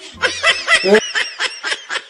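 Men laughing in rapid short bursts, several a second.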